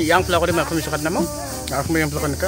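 A man talking, with a steady background hiss.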